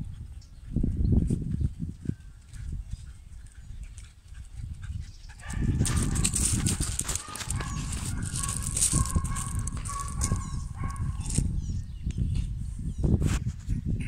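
Dogs in shelter kennels giving long, drawn-out whining cries, loudest from about the middle of the stretch for several seconds, over a low rumble on the microphone. A single sharp click comes near the end.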